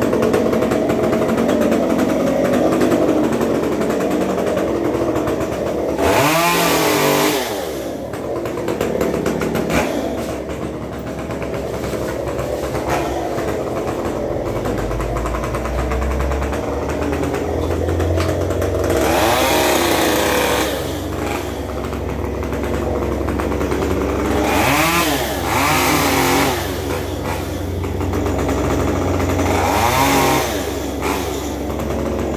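Small petrol engine of a garden power tool running steadily, revved up in short bursts about four times, its pitch climbing and dropping back each time.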